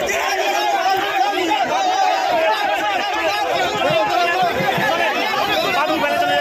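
Crowd babble: many people talking at once over one another, several voices overlapping with no single speaker standing out.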